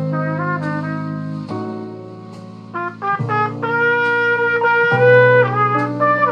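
Trumpet-family brass horn playing a slow jazz ballad melody of held notes over a sustained chordal backing. It drops softer about two seconds in, then comes back louder and more sustained from about three seconds on.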